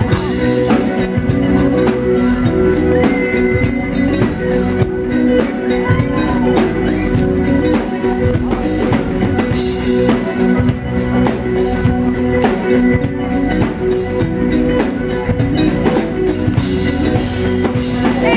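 Live rock band playing at full volume: electric guitars holding steady chords over a driving drum-kit beat.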